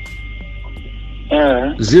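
Steady low electrical hum with faint hiss on a recording of a conversation, then a man's voice speaking a digit near the end.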